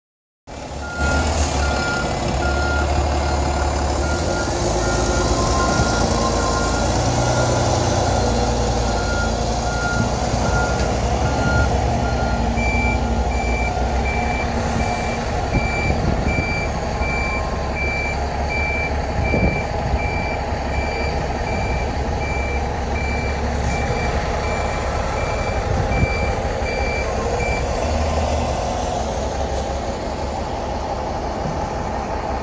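Bus reversing alarms beeping steadily over running bus engines: a lower-pitched beeper for the first dozen seconds, then a higher-pitched one takes over until near the end.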